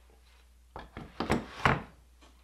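A metal hand plane being set into a wooden wall holder: a short run of knocks against the wood starting about halfway through, the last one the loudest.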